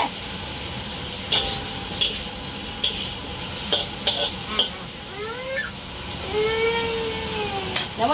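Food sizzling as it fries, a steady hiss, with several light clicks and knocks of kitchenware. A person's drawn-out voice is heard in the last few seconds.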